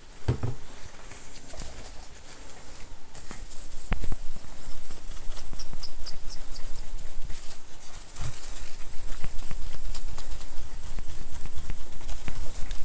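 Paper towel rubbed quickly back and forth over a MacBook's glass screen, scrubbing off the anti-glare coating with toilet-bowl cleaner. It makes a rough, irregular scrubbing that grows louder from about four seconds in, with a single knock at that point.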